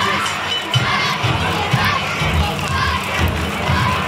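Large crowd of danjiri rope-pullers, many of them children, shouting together as they haul the float, with many voices overlapping.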